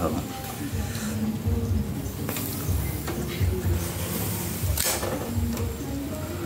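Metal tongs clicking against snail shells and a wire grill rack, with two sharp clicks about two and five seconds in, over faint background music.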